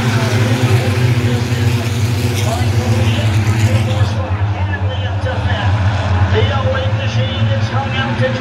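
A pack of short-track stock cars racing together, their engines a steady combined drone, with an announcer's voice over the public-address system.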